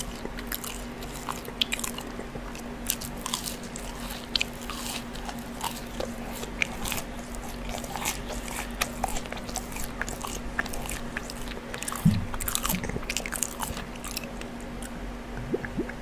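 Close-miked eating sounds: a bite into a crinkle-cut fry followed by chewing, with many small wet clicks and crunches from the mouth. One louder knock comes about twelve seconds in.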